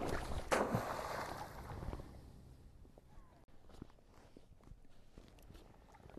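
A steel-mesh crab trap splashing into shallow water about half a second in, then water sloshing and gurgling around it that dies away within a couple of seconds; after that only a few faint ticks and clicks.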